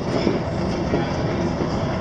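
Steady rumbling noise of a moving train carriage, heard from inside.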